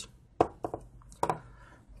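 A few light, sharp knocks and clicks as a plastic jar of fish-food flakes is handled and set down on a wooden table, followed by a faint rustle.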